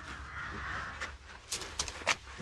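A crow cawing: a few short, harsh caws in quick succession in the second half.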